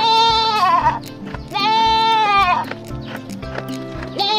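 A goat bleating twice, two long wavering calls, the second starting about a second and a half in, over background music with a steady beat.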